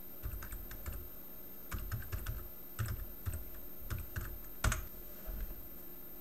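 Typing on a computer keyboard: irregular key clicks, with one louder click a little before the end.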